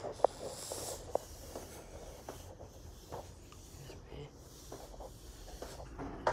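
Handling noise from a phone carried while walking: fabric rubbing over the microphone and irregular light knocks, with two sharper knocks in the first second or so.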